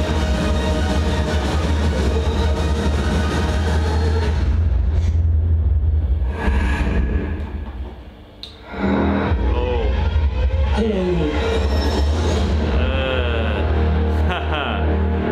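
Horror film trailer soundtrack: music over a heavy, steady low bass. It drops away briefly about eight seconds in, then comes back with sliding, falling tones.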